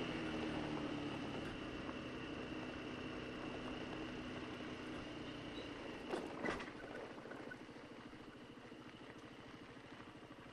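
Honda SH150i scooter's single-cylinder engine running at low speed as the scooter rolls along a gravel lane. Its steady hum fades as it slows, with a couple of short knocks about six seconds in.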